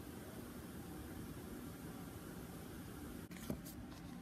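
Steady low room noise, with a brief dropout and then a single sharp click of handling near the end.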